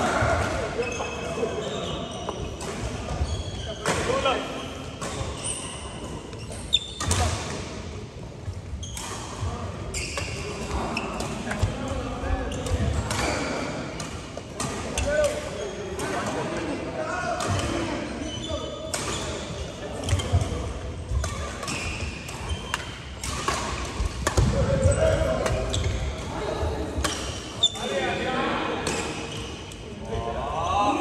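Badminton rackets striking a shuttlecock again and again during rallies: sharp, irregular hits that echo in a large sports hall, with players' voices in between.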